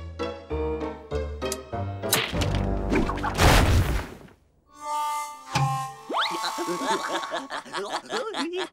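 Cartoon soundtrack: playful music, then a falling whoosh and a loud crash as a heavy rope-tied crate drops to the ground about three and a half seconds in. Short comic music stings and gliding tones follow.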